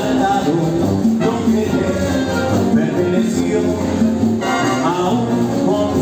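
Symphonic wind band playing a bolero arrangement live, with clarinets and brass carrying sustained melodic lines.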